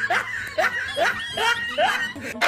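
A person snickering: a quick run of about five short laughs, each rising in pitch.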